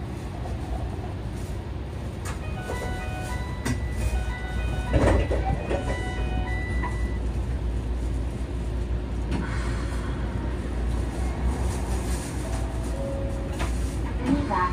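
Stationary Sapporo A1100 low-floor streetcar giving a steady low hum while standing. From about two and a half to seven seconds a short electronic melody of beeping tones plays, with a knock partway through.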